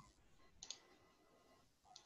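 Two faint computer mouse clicks, about a second and a quarter apart, over near silence.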